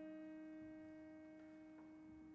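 Concert grand piano notes left ringing and slowly dying away, faint and close to silence.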